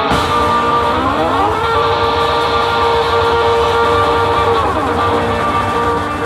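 Live band music from an organ, electric guitar and drums trio: a held chord slides up about a second in, sustains, and slides back down near the end, over a steady bass line.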